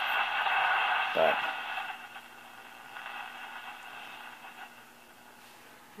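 1937 Philco 37-640 tube radio hissing with static through its bare field-coil speaker, tuned between stations, under a steady low hum. The hiss drops much quieter about two seconds in.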